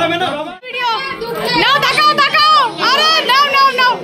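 Excited, high-pitched voices of several people, children among them, shouting and calling out over one another, with a brief lull about half a second in.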